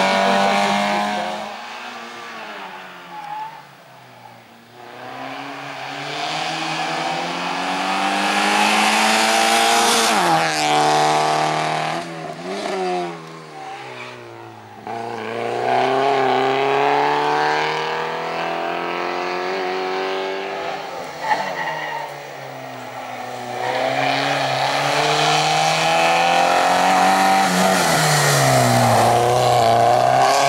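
Small hatchback slalom car's engine revving hard through a cone course. The revs climb again and again, then drop off sharply as the driver lifts and changes gear, and the engine fades a few times as the car pulls away.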